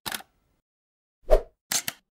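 Logo-animation sound effects: a short tick at the start, a single pop a little over a second in, then two quick clicks near the end, with silence between them.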